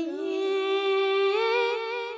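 A young boy singing a naat unaccompanied into a microphone, holding one long, slowly ornamented note that dips near the end.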